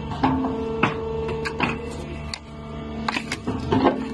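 Hydraulic scrap-metal shear running with a steady hum, with several sharp metal clanks and knocks as scrap steel shifts against the blade.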